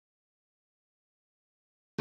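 Silence, with a sustained music chord starting abruptly at the very end.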